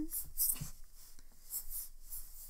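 Soft, scratchy rustles of yarn sliding over a metal crochet hook and the fingers as a double crochet stitch is worked, brightest about half a second in and again near the end.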